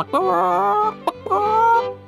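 Two drawn-out chicken-like calls from a cartoon rooster, each just under a second long, the first wavering in pitch, with light background music underneath.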